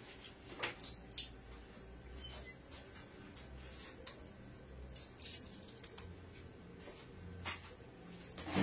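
Faint, scattered handling noises of kitchen things: a few short clicks and rustles, clustered about a second in, about five seconds in and near the end, over a low room hum.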